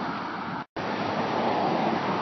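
Steady wind noise on a phone microphone with outdoor road ambience, broken by a brief gap of total silence under a second in where the recording is cut.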